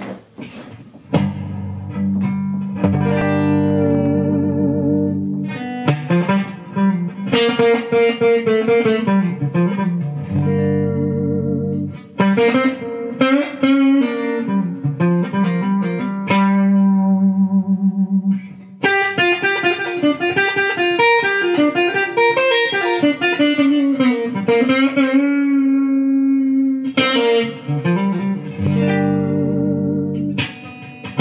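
Electric guitar, a G&L Stratocaster played clean through a Fender Mustang amp on its '65 Twin Reverb preset, improvising in G minor. Single-note melody lines run over held low notes, starting about a second in, with short breaks between phrases.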